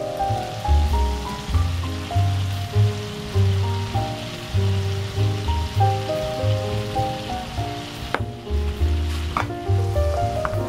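Instrumental background music with a bass line and melody, over the steady sizzle of a butter sauce bubbling in a frying pan as chopsticks stir it. The sizzle briefly thins out about eight seconds in.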